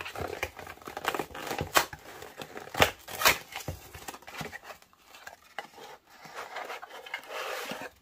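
Cardboard Priority Mail shipping box being torn open by hand: irregular crinkling and ripping of cardboard and paper, with a few sharper rips in the first few seconds.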